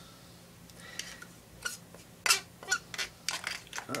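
Metal palette knife clicking and scraping against a small plastic paint cup while it picks up blue paint. The clicks are scattered and short, and come closer together near the end.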